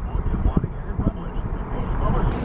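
A car driving: a steady low rumble of road and engine noise, with irregular low knocks.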